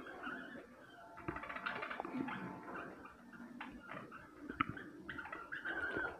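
A flock of caged budgerigars chattering and chirping softly, with a few short sharp clicks, one standing out a little past the middle.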